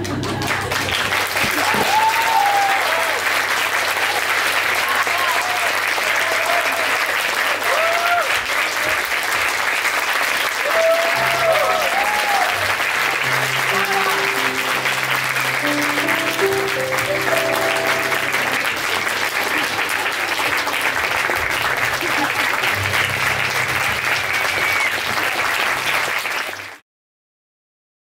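Audience applauding steadily, with shouts and whoops of cheering in the first half, over music playing underneath; it all cuts off suddenly near the end.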